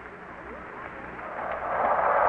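Steady rushing background noise on an old radio broadcast recording, growing louder over the last half second.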